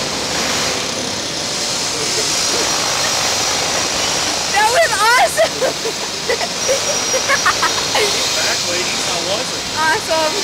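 Girls laughing on a swinging Slingshot reverse-bungee capsule, with a burst of high, quickly rising and falling laughter about halfway through and shorter laughs later. Underneath is a steady rush of wind on the ride-mounted microphone.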